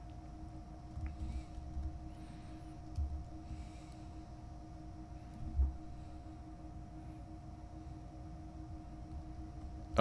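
A faint, steady two-tone background hum with low rumble, broken by a few soft low thumps about one, three and five and a half seconds in.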